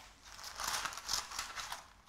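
Greaseproof baking paper rustling and crinkling as it is handled and pressed into a baking tin: a few soft, separate rustles.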